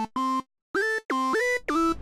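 Two layered Roland Zenology software-synth leads playing a melody together: a run of short, separated notes stepping up and down in pitch, with a brief silence about half a second in.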